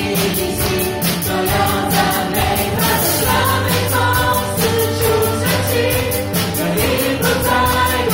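A live worship band: several vocalists singing together over guitar, keyboard and drums, with a steady beat and a sustained bass underneath.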